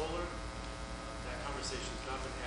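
Steady electrical mains hum on the sound system's audio feed, with faint off-microphone talk in the room.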